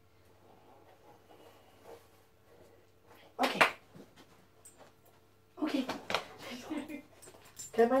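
A dog's short vocal sounds: one brief noisy burst about three and a half seconds in, then a longer cluster of sounds around six seconds in.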